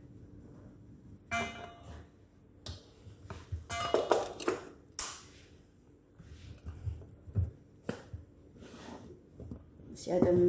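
Scattered knocks and clicks of kitchen handling around a hand blender's plastic chopper bowl, with a couple of short pitched sounds about a second and a half in and around four seconds. The loudest stretch is around four seconds.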